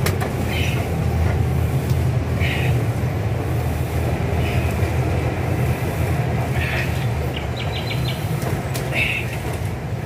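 A steady low mechanical rumble runs throughout. Over it comes a short rasp about every two seconds, the rope running through the tree-mounted pulleys of a homemade pull-down rig with each pull, and a quick run of light clinks near the end.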